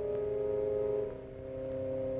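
Slow, solemn organ music of sustained chords, the chord shifting about a second in.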